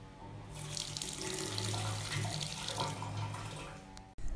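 Water running from a tap, starting about half a second in, over quiet background music.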